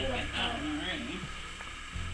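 Quiet talking in a small room, over a steady low hum.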